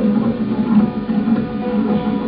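Classical Persian music with a plucked tar, its notes following one another in a steady flow.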